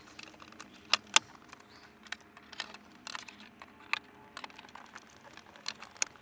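Small plastic clicks and rattles of wiring-harness connectors being handled and pushed into the back of an aftermarket car radio, with two sharper clicks about a second in and another near four seconds.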